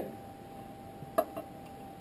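Two light clicks about a second in, made by small hand tools being handled against a glass tabletop, over a faint steady hum.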